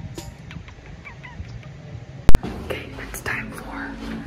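A single sharp, very loud click a little over two seconds in, followed by soft whispering.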